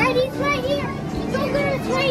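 Busy arcade din: children's voices and chatter over arcade game music and sounds.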